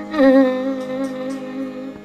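Chitravina, a 21-string fretless slide lute, sounding a note in raga Neelambari that glides up into pitch, then holds and fades away. A steady tanpura drone sounds beneath it.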